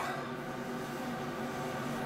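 Steady low mechanical hum with faint steady tones in it.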